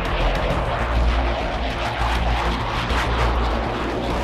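Steady rushing noise of a jet aircraft in flight, laid over music with a steady low bass line.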